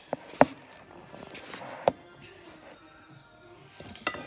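Two sharp knocks on a kitchen countertop, about a second and a half apart, as things are set down on it, over faint background music.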